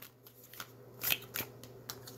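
A deck of tarot cards being shuffled and handled by hand: a few separate short papery strokes, the loudest about a second in.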